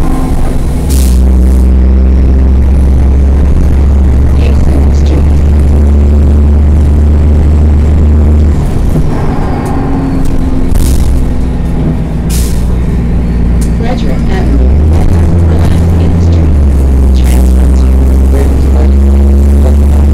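Cummins M-11 diesel engine of a NABI 40-SFW transit bus heard from inside the passenger cabin while the bus is under way, a deep steady drone that eases off about eight seconds in and picks up again near fifteen seconds. Several short hisses and rattles sound over it.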